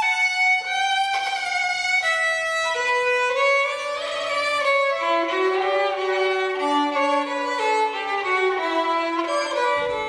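Solo violin playing a slow bowed melody, one note at a time, that works its way downward in pitch across the passage.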